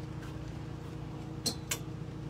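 Steady low hum, with two sharp clicks close together about one and a half seconds in as clothes hangers are handled on a metal garment rack.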